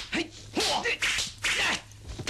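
Kung fu film fight sound effects: quick whooshing swishes of punches and blocks, about four in two seconds.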